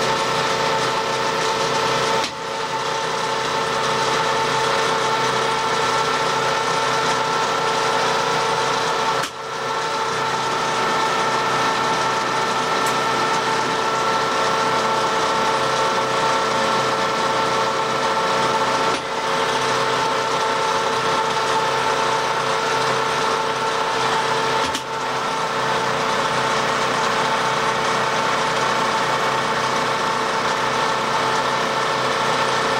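Colchester screw-cutting lathe running under power, taking a roughing pass on metal bar stock: a steady machine whine with several held tones over the noise of the cut. The sound briefly drops four times.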